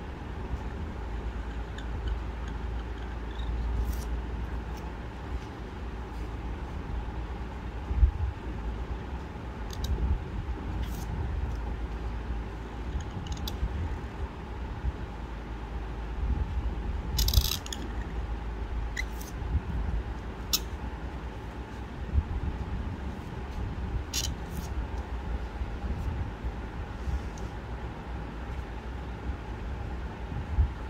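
Chisel-cut calligraphy pen nib scratching across paper in short, separate strokes while lettering, over a steady low background rumble.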